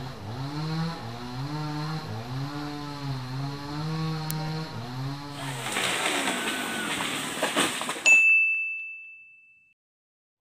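A low pitched sound that rises and falls about once a second, then a burst of crackling noise with sharp clicks. About eight seconds in, a loud bright chime, a sound effect, strikes once and rings out, fading to silence.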